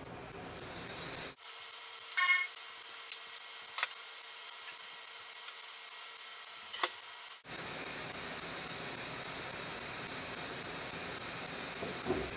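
Low, steady room hiss, with one short beep-like tone about two seconds in and a few faint clicks.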